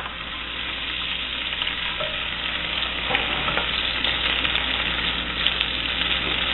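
Minced garlic sizzling in hot melted butter and olive oil, stirred with a wooden spoon in a stainless steel pot; the sizzle grows louder over the first couple of seconds, then holds steady.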